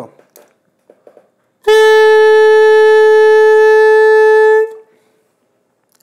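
A saxophone neck and mouthpiece blown on their own, without the body of the horn: one plain, steady note held for about three seconds, starting a little under two seconds in and stopping cleanly.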